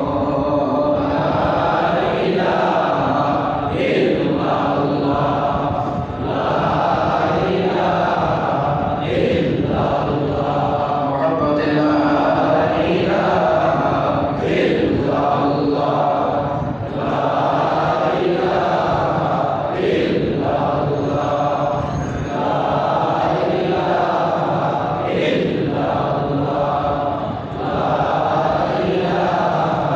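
A single voice chanting a melodic Islamic devotional recitation in long drawn-out phrases, with short breaks about every five seconds.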